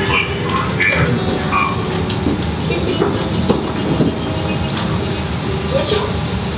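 Film soundtrack played through the room's speakers: a steady rumbling noise with a few short high tones scattered through it.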